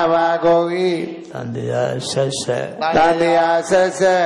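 A Buddhist monk's voice chanting into a microphone, in long phrases held on a nearly level pitch with short breaks between them.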